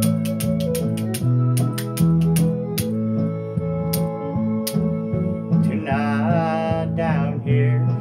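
Karaoke backing track playing the intro of a country song: steady bass and guitar rhythm under brisk ticking percussion, with a wavering melodic lead line coming in about six seconds in.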